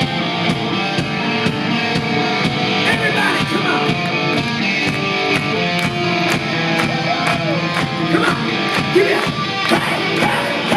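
Live rock band playing loud: electric guitar over a steady drum beat of about two strikes a second.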